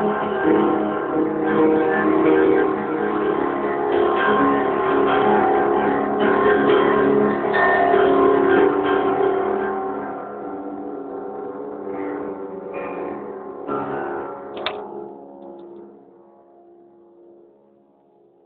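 Acoustic guitar being strummed, with a few last separate strokes and then the final chord ringing out and fading away over the last few seconds.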